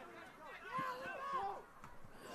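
Faint, distant shouting voices, the kind of calls players make to each other on a soccer field, heard under the open-air ambience of the pitch.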